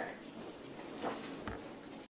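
Quiet rustling and shuffling as someone gets up from a classroom desk chair, with a single low bump about one and a half seconds in.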